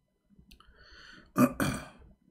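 A man clears his throat once, sharply, about one and a half seconds in, running straight into a short spoken "yeah".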